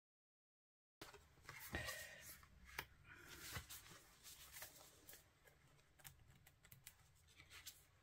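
Faint handling of tarot and oracle cards: light taps, clicks and paper rustles as cards are moved and laid out, after a first second of dead silence.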